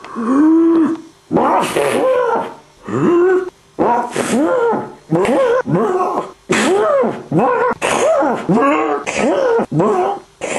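A person's voice making loud, wordless cries over and over, about one a second, each opening with a breathy rush and then rising and falling in pitch.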